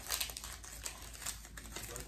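Artificial leaf and flower stems rustling and crackling against the dry woven twigs of a grapevine wreath as they are pushed in, a quick irregular run of small clicks and crackles.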